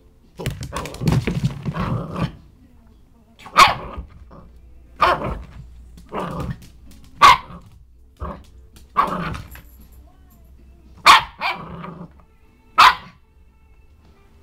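A puppy barking in short, sharp single barks, about nine of them spaced a second or so apart, after a longer stretch of lower, continuous sound in the first two seconds.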